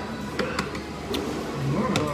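A few light clicks of chopsticks against bowls over restaurant background noise, with a brief low hum of a voice near the end.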